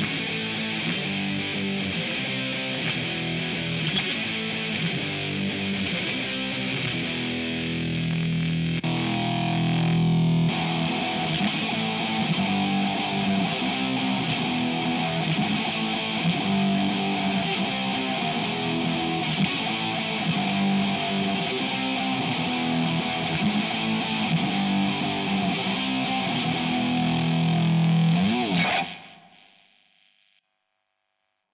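Electric guitar riffing through a 1996 BOSS GT-5 multi-effects unit's overdrive/distortion section, said to be an analog circuit, switching from the DISTORTION2 patch to the GRUNGE patch partway through. The playing stops abruptly about a second before the end.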